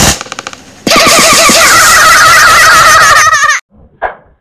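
Paper crumpling, then a loud warbling, rattling sound for nearly three seconds that cuts off suddenly.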